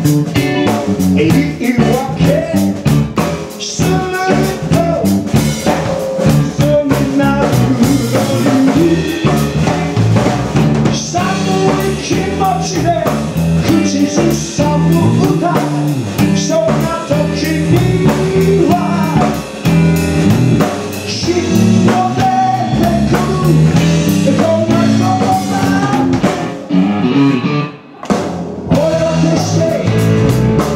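Live rock band playing: a male lead vocal sung over electric guitar, electric bass and drum kit, with a brief break about two seconds before the end.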